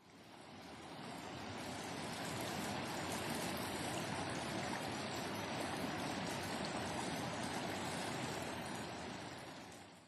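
Shallow mountain stream running over boulders: a steady wash of water that fades in over the first couple of seconds and fades out near the end.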